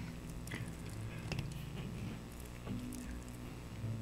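Faint handling sounds of a PenBBS 535 fountain pen's blind cap being unscrewed: a few small scattered clicks and rubs over a low steady hum.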